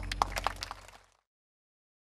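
The last sustained notes of a live pop band's song over a steady low hum, broken by several sharp, irregular clicks, then fading out into silence a little over a second in.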